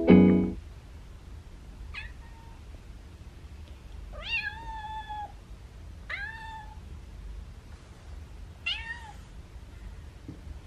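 A kitten mewing four times, about two seconds apart, each call rising quickly then levelling off; the second is the longest and loudest. Music cuts off just at the start.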